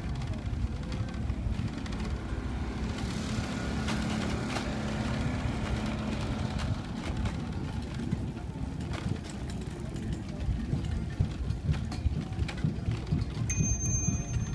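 Wind rumble and bumpy handling noise on the microphone of a camera carried on a moving bicycle, with faint voices mixed in.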